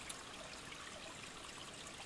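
Faint, steady trickle of a small stream.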